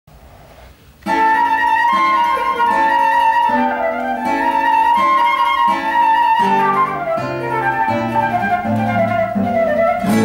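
Flute and classical guitar playing together, starting about a second in; the flute holds a long melody over the guitar's plucked notes.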